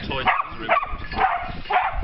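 A dog whining and yipping, mixed with people talking.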